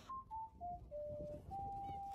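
A sudden click, then a run of pure, whistle-like notes: four short notes stepping down in pitch, then one long held note pitched a little higher, over a low rumbling noise.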